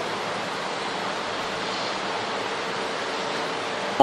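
A steady, even rushing hiss with no change in level.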